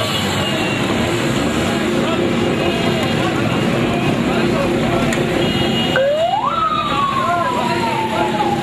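Busy street noise of traffic and many voices. About six seconds in, a police vehicle's siren starts with one wail that rises quickly in pitch and then slowly falls.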